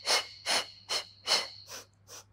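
A woman's short, forceful breaths in a steady rhythm, five in quick succession, about two and a half a second. This is the staccato counted breathing of the Pilates Hundred.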